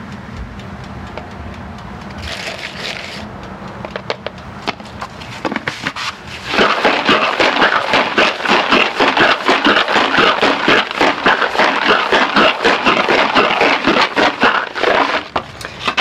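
Cast 9mm bullets rattling inside a plastic tub of powder coat as it is shaken hard by hand to coat them: a loud, fast, continuous rattle that starts about six seconds in and stops just before the end. Before it come quieter clicks of the tub and lid being handled.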